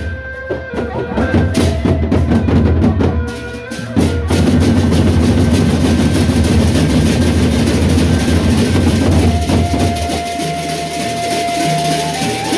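Sasak gendang beleq ensemble playing: large double-headed barrel drums beaten with sticks in dense, fast patterns. The playing dips briefly, then comes back louder and fuller about four seconds in. A steady held tone joins near the end.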